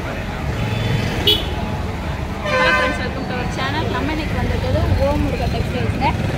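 Busy city street traffic: a steady rumble of engines with vehicle horns honking, a short toot just over a second in and a longer honk about two and a half seconds in.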